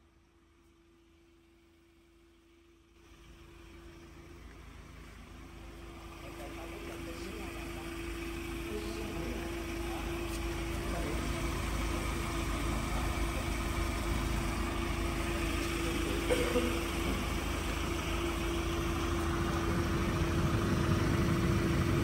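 A pneumatic grease pump running: a steady mechanical drone with a constant hum, starting out of silence about three seconds in and growing gradually louder.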